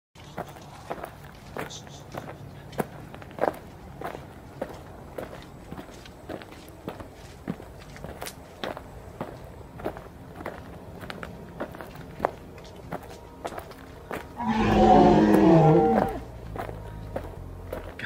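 Footsteps on a dirt and wood-chip floor, about two steps a second, as someone walks along. Near the end a loud, wavering, voice-like call sounds for about a second and a half.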